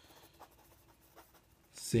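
Pen writing on notebook paper: faint scratching strokes with a few light ticks.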